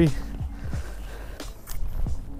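Footsteps on loose shoreline rocks, with a low wind rumble on the microphone and a couple of sharp clicks about a second and a half in.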